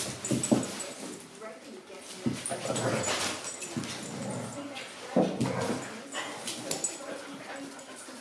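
Two dogs play-wrestling, with whining play noises over the irregular scuffle of their bodies and paws.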